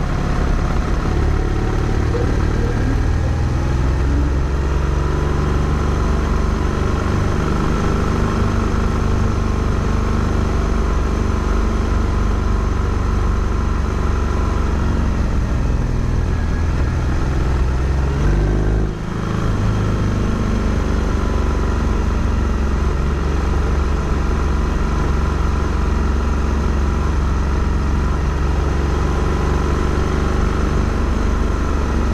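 A vehicle engine running under steady wind rumble on the microphone, its pitch rising and falling with speed. The sound dips briefly a little past halfway.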